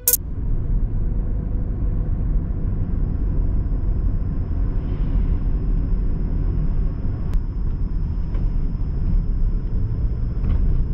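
Steady low rumble of road and engine noise heard from inside a moving car's cabin.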